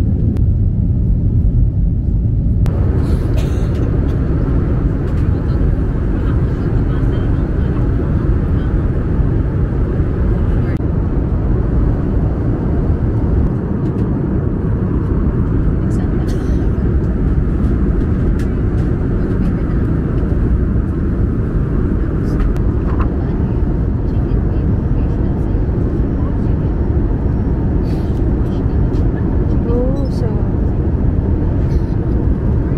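Airliner cabin noise in flight: a loud, steady low rumble of engines and rushing air that goes on without a break. About three seconds in it turns a little brighter, with a few faint light taps.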